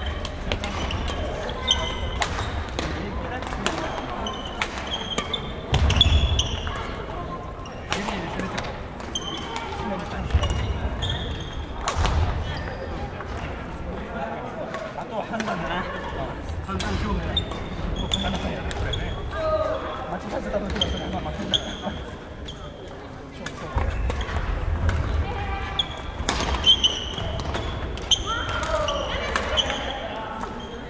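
Badminton hall sounds: sharp clicks of rackets hitting shuttlecocks and short squeaks of shoes on the wooden court floor, scattered irregularly, with people talking in the background.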